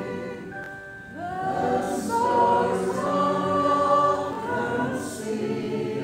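Group of voices singing a slow gospel hymn together, in held, drawn-out notes.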